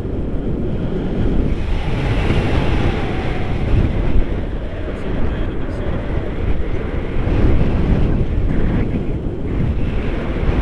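Airflow of a paraglider in flight rushing over an action camera's microphone: a loud, steady, low buffeting rumble of wind noise.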